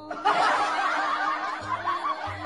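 People laughing, starting a moment in, over background music with a steady low note.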